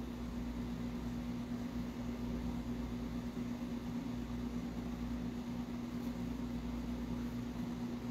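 Steady room hum: a constant low tone over an even hiss, unchanging throughout, like a fan or air-conditioning unit running.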